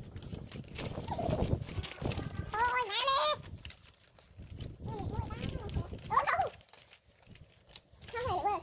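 Wavering, bleat-like animal calls, one about two and a half seconds in and another about five seconds in, with soft low voices in between.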